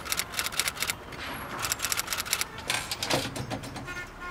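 Rapid, irregular clicking of keys being typed, several strokes a second with a short pause about a second in.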